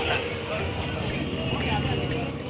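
Busy street noise: people talking over a steady rumble of traffic.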